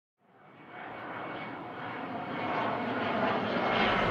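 A steady rushing noise fades in from silence about a quarter of a second in and keeps getting louder.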